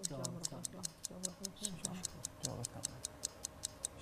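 Quiz-show countdown timer sound effect ticking rapidly and evenly, about six or seven ticks a second, while the thirty seconds for the answer run down. Low voices murmur faintly underneath.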